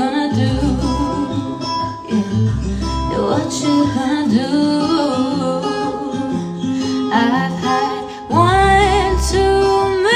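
A woman singing a slow song into a handheld microphone over guitar accompaniment with bass. Her voice gets louder about eight seconds in, with long held notes.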